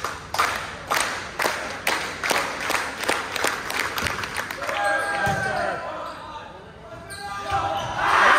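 A volleyball bounced on the hardwood gym floor about twice a second, a server's routine before serving. Then sneakers squeak on the court as the rally gets going, over gym chatter.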